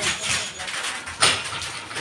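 Basketball bouncing on a wet concrete court: two thumps about a second and a quarter apart, the second the louder, over a steady outdoor hiss.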